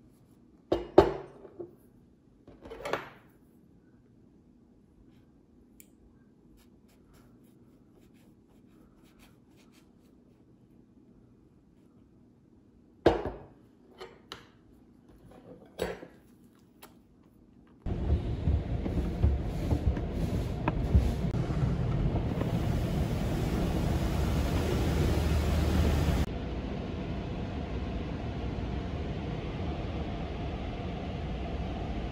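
A few short clinks and knocks of tableware on a table. Then, about 18 seconds in, an automatic car wash starts up, heard from inside the car: a loud, steady rush that drops to a lower level about 26 seconds in.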